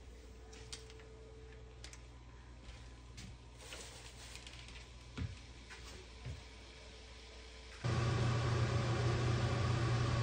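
Pork pieces sizzling and crackling faintly as they sear in a nonstick pot, over a faint steady hum. About eight seconds in, a much louder steady low hum starts suddenly.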